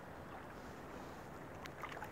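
Shallow river water running and lapping around a wading angler's legs and hands, a steady low rush, with a few small splashes near the end as his hands move at the surface releasing a revived rainbow trout.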